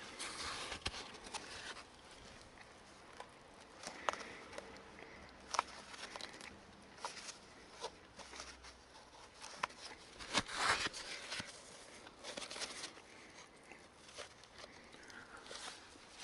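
Gloved hands working a fuel hose through the frame beside a Vespa PX's carburettor air filter: faint rustling and rubbing with scattered small clicks, and a louder rustle lasting about a second a little after ten seconds in.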